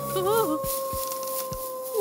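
A long eerie howl-like call, holding one steady pitch after a slight rise at its start and stopping abruptly near the end. A character's voice briefly cuts in over it.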